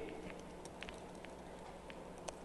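Faint, irregular clicks of a laptop keyboard being typed on, over a low steady hum.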